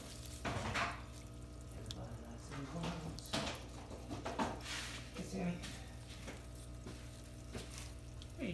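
Shallow water in a turtle tub splashing and trickling in irregular small bursts as a Chinese box turtle moves through it, over a steady low hum.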